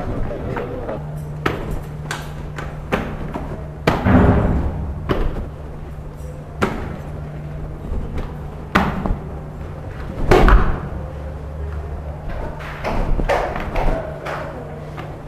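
Irregular knocks and thumps from the camera being handled and moved about, over a steady low hum.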